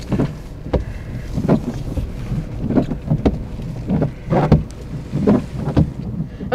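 Car moving slowly, heard from inside the cabin: a steady low rumble with irregular knocks and bumps about every second.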